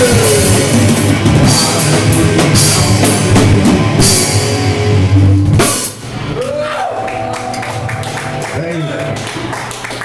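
A live rock/metal band, distorted electric guitar over a drum kit, plays loud and stops abruptly just under six seconds in as the song ends. After that, quieter sustained guitar tones ring on, bending in pitch a couple of times.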